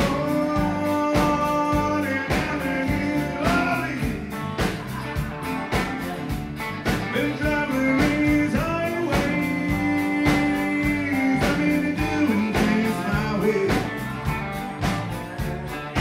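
Live country band playing with a steady drum beat, bass, electric and acoustic guitars and fiddle, with sustained, bending melody notes over the rhythm.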